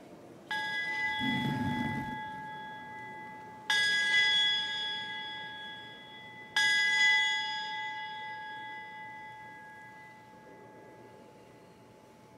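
Altar bell struck three times, each strike ringing out and slowly fading before the next, rung at the elevation of the consecrated host during the Mass.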